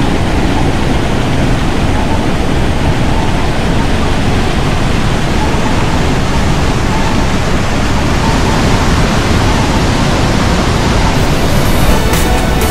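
Water pouring over a low mill-dam spillway into the pool below: a loud, steady rushing.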